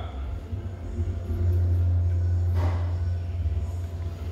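A low, steady rumble, loudest in the middle, with a brief faint rustle about two and a half seconds in.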